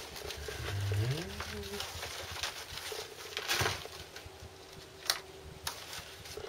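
Hands pressing and smoothing loose compost into a plastic seed tray, with scattered short rustling and scraping strokes. A brief hummed sound from a person rises in pitch about a second in.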